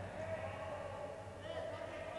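Faint background of an indoor handball court between commentary phrases: a low, even hall noise with a faint steady tone that comes and goes.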